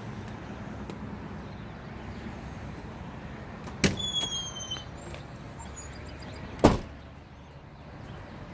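Semi-truck cab door being shut, with a knock about four seconds in as it closes, then a louder, sharper knock near seven seconds, over a steady low hum.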